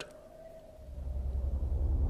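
A low rumble that swells up steadily from about a second in, over a faint steady hum: a building drone on the drama's soundtrack.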